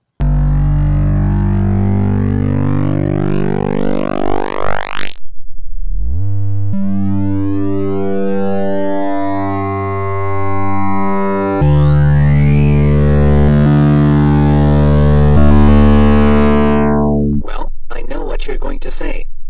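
Oscilloscope music: loud, buzzy synthesized drones rich in overtones that step between pitches, with sweeping glides; a rising sweep cuts off about five seconds in, and a louder section with high gliding tones follows later, ending in a falling sweep.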